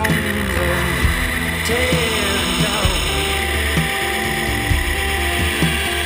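A knife blade ground freehand against the contact wheel of a belt grinder: a steady high hiss, heard under a song with guitar and singing.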